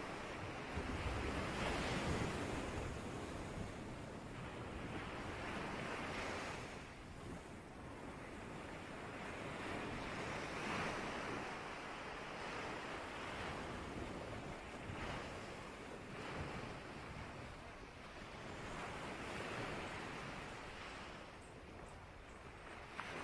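A rushing, surf-like noise that swells and fades every two to four seconds, like waves washing in. There is no music and no tone, only the noise.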